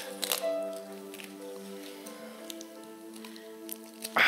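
Soft background keyboard music: sustained chords held throughout, shifting to a new chord about halfway through. A brief rustle with a few clicks comes about a third of a second in.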